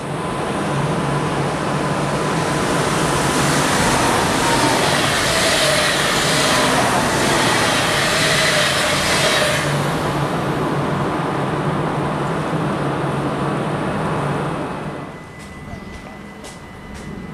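NS ICM 'Koploper' electric intercity train passing through the station at speed. Its rushing rail and wheel noise is loudest in the middle, with a whine that falls in pitch as it goes by, and it dies away near the end.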